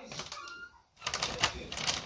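Plastic packaging crinkling and crackling as shop items are handled, a dense run of quick clicks that starts about a second in after a brief hush.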